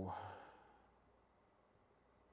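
A man's drawn-out "oh no" trailing into a breathy sigh that fades away within about half a second, then near silence.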